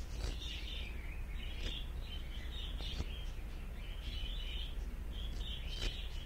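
Small birds chirping again and again in the background over a low steady hum, with a few faint clicks.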